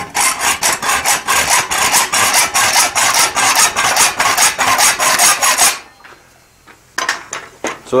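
Hacksaw cutting through a thin metal square clamped in a vise, in quick even strokes of about four to five a second. The sawing stops after about five and a half seconds, and a few light clicks follow shortly before the end.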